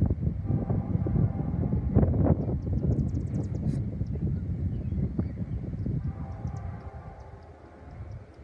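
Low rumble of a departing Metra commuter train dying away, mixed with wind buffeting the microphone; it fades over the last couple of seconds.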